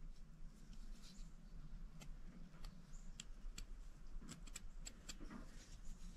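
Faint, scattered small clicks and light rubbing as an open Case folding hunter pocket knife is handled and turned in the fingers.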